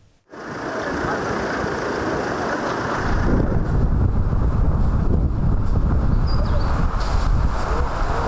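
Wind buffeting a microphone outdoors: a steady rushing noise that starts abruptly, with a heavy low rumble joining about three seconds in.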